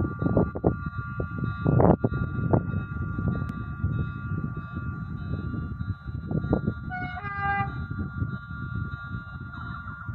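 Wind buffeting the microphone, with a faint steady high whine throughout. About seven seconds in, an approaching electric locomotive's horn sounds briefly: two short notes, the second slightly higher.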